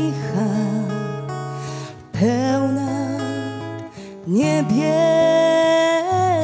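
A woman singing a slow song into a microphone with acoustic guitar accompaniment, in three phrases with short breaks between them; she slides up into her notes and holds a long note over the last two seconds.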